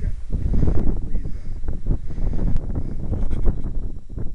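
Wind buffeting the microphone: a loud, uneven low rush with crackling.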